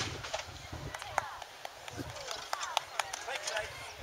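The low rumble left by a muzzle-loading field cannon's shot, fading over the first second, followed by faint distant voices and a few scattered clicks and knocks.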